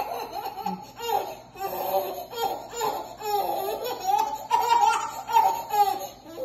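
A baby laughing in high-pitched giggles, one after another.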